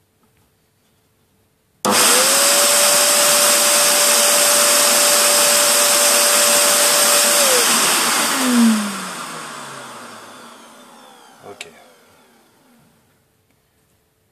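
An electric air blower switches on suddenly and runs loud and steady for about six seconds, a rush of air with a motor whine at one steady pitch. It is then switched off and winds down, the whine falling in pitch and the rush of air fading away over several seconds. A faint click comes near the end.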